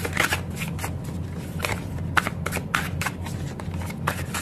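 A deck of cards being shuffled by hand, a run of irregular quick clicks and snaps, as a card is about to be drawn from it.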